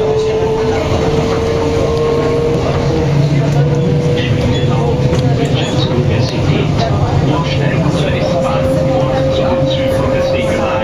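Wiener Linien U6 metro train heard from inside the car: a steady, loud rumble of the running gear on the rails, with a single motor whine that climbs slowly in pitch as the train gathers speed.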